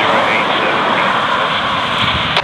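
Railroad scanner radio putting out a loud, steady static hiss with a weak, barely audible voice underneath, the tail of a dispatcher's track-bulletin transmission.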